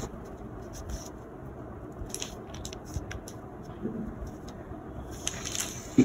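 Faint handling sounds of a metal ruler and marker being moved and set down on paper pattern sheets: a few light, scattered taps and rustles.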